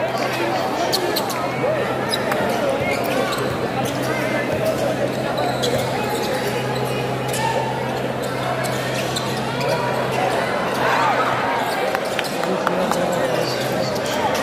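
Crowd of spectators chattering and calling out in a gymnasium during a live basketball game, with a basketball bouncing on the hardwood court and many short sharp clicks and knocks from play. A steady low hum runs under it.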